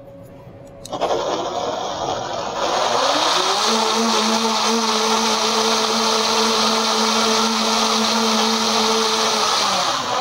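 Countertop blender motor running, blending a beet and strawberry smoothie. It starts about a second in, climbs in speed around three seconds in, holds steady, then cuts off near the end.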